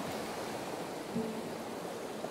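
Steady rushing of a creek's running water.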